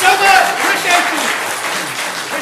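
Audience applauding, with voices calling out over the clapping, the applause dying away.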